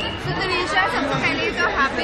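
Crowd chatter: several people talking at once in a busy hall, with no single voice standing out.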